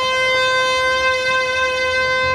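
Trumpet holding one long steady note, unaccompanied.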